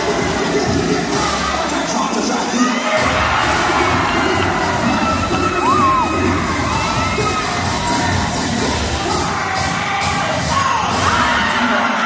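Crowd cheering and shouting, with many individual high shouts rising and falling in pitch, over dance music with a low beat playing through the PA.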